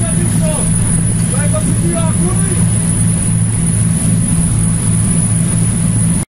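Boat engines running steadily, heard on the stern deck of a coast guard patrol boat as a low drone, with a constant high-pitched whine over it. Voices come through briefly in the first couple of seconds.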